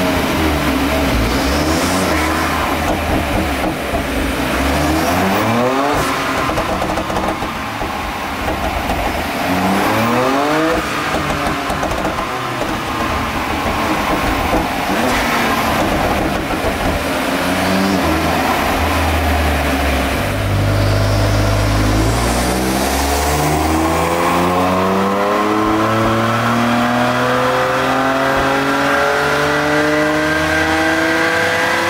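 BMW F80 M3's twin-turbo 3.0-litre S55 straight-six running on a chassis dyno: a few short revs as it warms up, then, from about 21 seconds in, a long full-throttle pull with the engine note climbing steadily. The engine has a slight misfire under the tune's higher boost, which is put down to its spark plugs.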